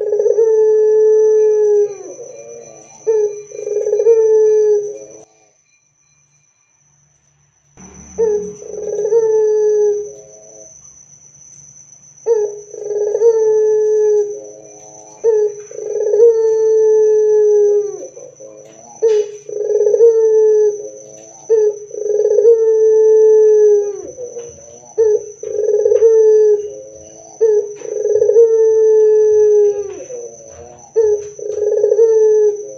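Barbary dove (puter) cooing loudly over and over: drawn-out coos about a second long, one after another, with a pause of two to three seconds about five seconds in.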